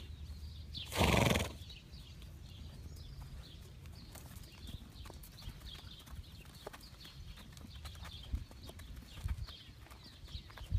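A horse gives one short, loud snort about a second in, followed near the end by soft hoof steps on dirt.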